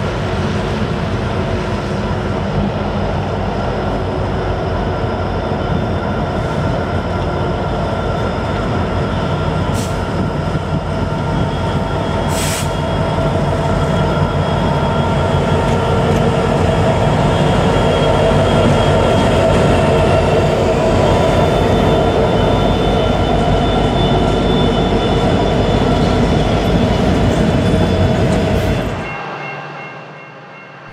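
Two EMD diesel locomotives, a Union Pacific SD70M and an SD75M, lead an empty coal train past, their engines running steadily. The engines grow louder as the lead units draw close and pass, and the sound cuts off shortly before the end.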